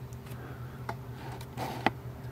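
A low steady hum with a few faint, sharp clicks; the sharpest click comes near the end.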